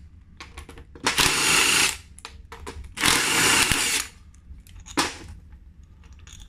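Cordless drill driving a 5 mm hex bit, run in two short bursts of just under a second each to undo the Allen-key bolts of a two-piece wheel rim. Small clicks of metal parts being handled come between the bursts, and there is a brief sound near the end.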